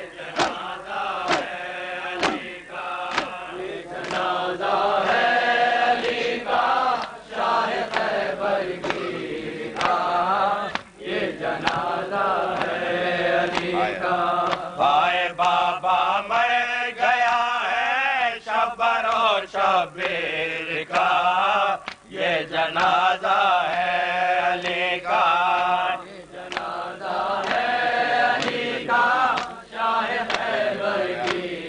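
Group of men chanting an Urdu noha (Shia lament), with the sharp slaps of hands beating on chests (matam) keeping a steady beat under the voices.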